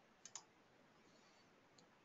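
Near silence, with two faint short clicks a little after the start and a fainter one near the end.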